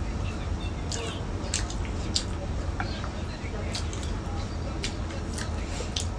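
Someone eating: chewing with a few short, wet mouth clicks scattered through, over a steady low hum.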